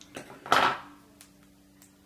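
A few light clicks and one brief rustle, about half a second in, of small tools being handled at a fly-tying vise.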